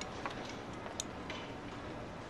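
Chopsticks and tableware giving a few light clicks against dishes, the sharpest about a second in, over quiet room tone.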